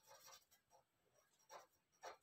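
Near silence with a few faint scratches of a marker pen writing on paper.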